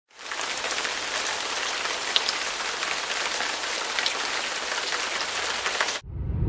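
Steady heavy rain falling, a dense patter of many small drops.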